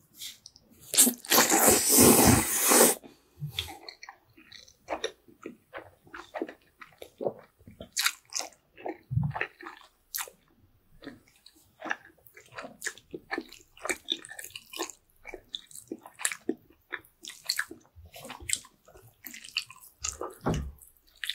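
Close-miked person slurping a long mouthful of sauced noodles, loud for about two seconds starting a second in, then chewing with many short wet mouth clicks and smacks.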